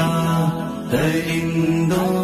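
Urdu devotional nasheed: a voice holding long, drawn-out notes in a chant-like style, moving to a new note about a second in.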